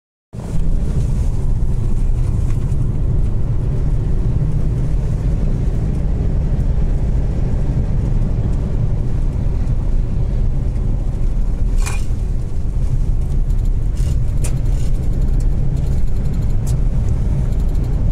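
Steady low rumble of a car driving on an asphalt road, heard from inside the cabin: engine and tyre noise. A few brief clicks come in the second half.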